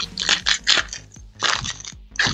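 Foil Pokémon booster pack wrapper crinkling and tearing as a pack is opened by hand: a series of short crackling rustles.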